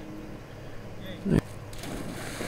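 A yellow Labrador retriever launching off the bank into pond water: a brief low thud a little past halfway, then splashing hiss near the end as it hits the water.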